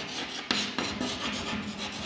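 Chalk scratching on a blackboard in a run of short writing strokes.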